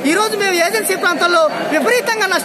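A man speaking in Telugu, close to the microphone, without a pause.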